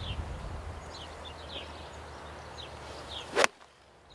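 Golf iron, a six-iron, striking a ball off fairway turf: one sharp crack about three and a half seconds in, over wind rumbling on the microphone.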